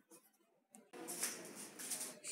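Faint rustling of paper and handling noise as the workbook is moved, starting about a second in after a near-silent moment.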